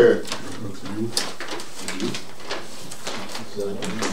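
Paper ballots being unfolded and handled, giving a scatter of short, crisp paper crackles, with low murmured voices under them.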